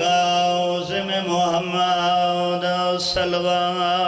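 Male voice chanting in long, drawn-out held notes, amplified through a microphone: a zakir's sung recitation.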